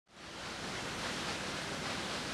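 Steady, even hiss of outdoor background noise with no distinct sounds in it, fading in at the very start.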